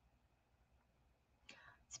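Near silence: room tone, with a faint breath near the end just before speech.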